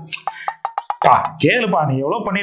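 A quick run of about six sharp clicks over half a second, over a faint steady tone, followed by a man's voice.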